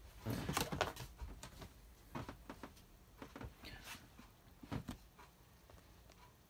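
Handling noises: scattered light clicks, knocks and rustles of plastic containers and packaging being handled and opened.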